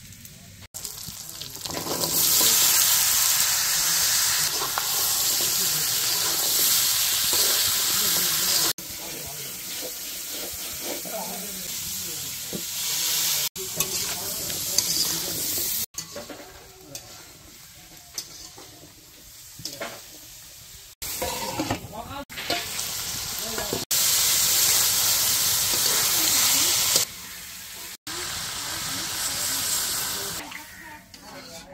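Potatoes and red amaranth stems frying in oil in an iron karahi, a loud, steady sizzle, with a spatula stirring and scraping the pan. The sizzle comes in several stretches that break off suddenly, louder in some and quieter in others.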